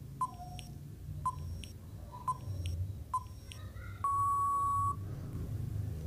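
Countdown timer sound effect: short beeping ticks about once a second, then one longer steady beep lasting about a second as the count runs out.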